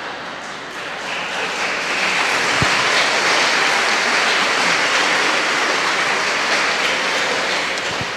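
A congregation applauding: a steady patter of many hands clapping that swells about a second in and eases off near the end.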